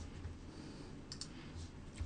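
Faint room tone with a low steady hum and a couple of soft clicks about a second in, during a pause in a lecture.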